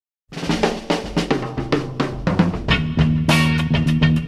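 Opening of a late-1960s funk recording: a drum kit starts a little after the beginning with a busy pattern of snare and kick strokes, about four a second. A little past halfway other pitched instruments come in under the drums.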